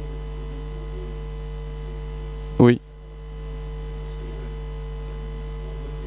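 Steady electrical mains hum, a low buzz with overtones, running under the recording. It drops out briefly just after a short spoken word a little past halfway and fades back in.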